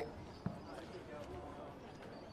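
Faint open-air ambience of a football ground, with a single short knock about half a second in.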